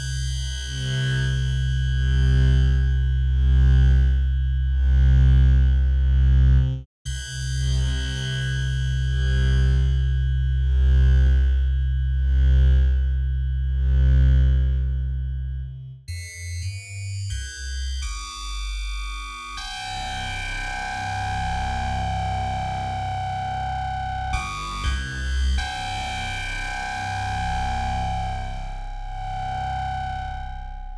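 The 'Punk Mod' synth patch from Spitfire LABS Obsolete Machines, played from a keyboard: a deep sustained chord that swells and fades about once a second, cut off for a moment about seven seconds in. About halfway through it gives way to a few short stepped notes, then a higher held chord, briefly broken near the end.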